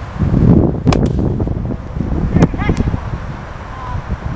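Wind buffeting the microphone with a low, choppy rumble, broken about a second in by a sharp crack of a plastic Wiffle bat hitting the ball. A second sharp sound and a brief shout follow near the middle.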